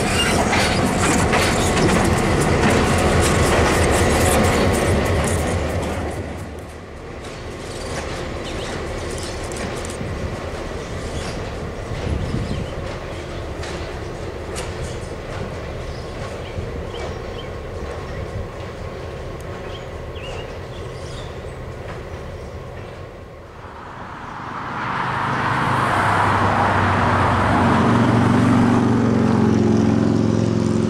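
Diesel-hauled passenger excursion train led by an EMD FP9A, its wheels clicking over rail joints. It is loud for the first few seconds, then quieter and more distant. Near the end a steady low diesel engine drone comes up.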